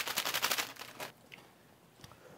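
A quick, even run of sharp taps on a small packet held in the fingers, more than ten a second, stopping about a second in.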